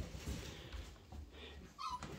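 Cocker spaniel puppy giving two brief high whimpers near the end, the second louder, over quiet room sound.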